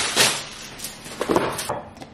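A clear plastic bag being handled, rustling and crinkling, with a couple of sharper crackles.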